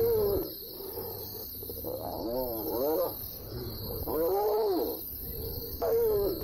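Hyenas calling during a fight as a group bites one hyena: three drawn-out calls that rise and fall in pitch, one at the start, one about two seconds in and one about four seconds in.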